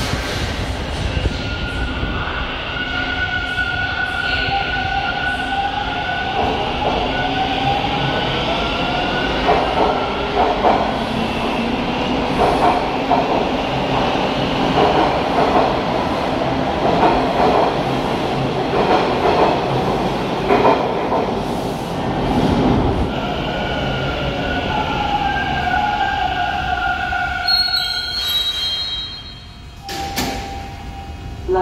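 TTC T1 subway train running along a station platform. Steel wheels squeal on the rails in the first several seconds and again late on, with a dense clattering rattle of wheels and cars in between. It slows and comes to a stop near the end.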